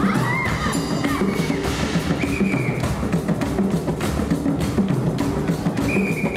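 Live marimba and percussion band playing: a repeating pattern of low marimba notes over hand drums, with a few high held notes sounding over the top.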